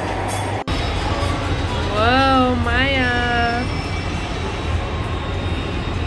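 Steady low rumble of an amusement ride's machinery running, with a brief cut-out in the sound under a second in. A voice calls out in a long drawn-out, wavering note in the middle.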